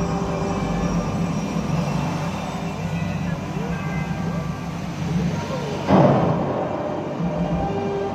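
Dramatic show soundtrack played over loudspeakers: a low sustained drone under music, with a sudden loud boom about six seconds in that dies away over the next second. Voices are mixed in.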